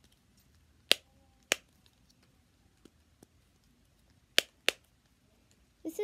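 The silicone push-bubbles of a unicorn-shaped simple dimple fidget toy being pressed, popping with sharp clicks: two loud pops about a second in, two fainter ones near three seconds, and two more loud pops past four seconds.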